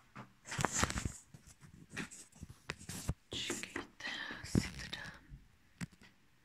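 Quiet whispered muttering mixed with close rustling and handling noises, broken by a couple of sharp clicks.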